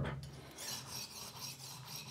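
Horl 2 rolling knife sharpener's diamond-coated disc rolled back and forth along a kitchen knife's edge, a faint grinding of steel on the abrasive with each stroke.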